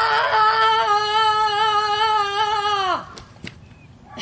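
A woman's long, loud 'ah!' yell, a deliberate tantrum-style stress-release shout, held on one pitch and dropping off about three seconds in. It is followed by a couple of soft knocks as she drops flat onto the yoga mat.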